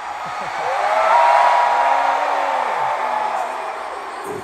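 Stadium crowd cheering and screaming, with one long, held scream close by from about a second in to near the end.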